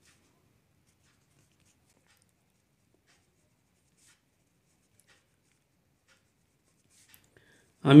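Faint scratching of a pen writing on paper, in short strokes, with speech starting near the end.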